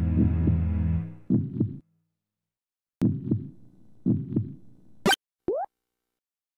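Heartbeat sound effect, four double 'lub-dub' thumps, over a low horror drone that cuts off about a second in; the beats go on alone with a pause in the middle. Near the end comes a short sharp noise, then a quick rising tone.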